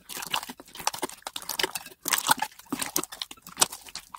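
Hands squishing and kneading a mass of mixed old slimes: a dense, irregular run of wet pops and crackles, with a brief pause about halfway through.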